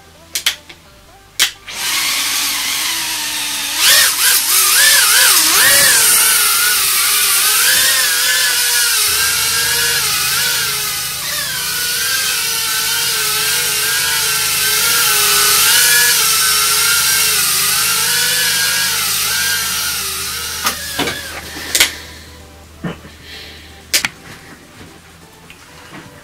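Happymodel Mobula 6 micro whoop's brushless motors and ducted propellers whining in flight, the pitch wavering up and down with the throttle. It spins up about two seconds in and cuts out about twenty seconds in, followed by a couple of clicks.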